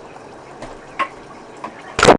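Steady hiss of a camera's own recording, with a faint click about a second in. Right at the end comes a sudden loud plop as the camera falls off its tripod into a bowl of oats and water.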